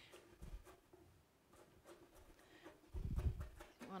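Chef's knife chopping flat-leaf parsley on a wooden cutting board: faint, irregular knocks of the blade on the board, with a duller low thump about three seconds in.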